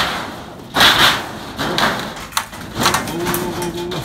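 Repeated kicks against the loose door panel of an old metal shed being torn down: a sharp bang at the start, then several loud crashes and rattles as the panel gives.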